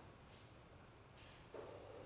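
Near silence: lecture-hall room tone, with a faint steady tone coming in about one and a half seconds in.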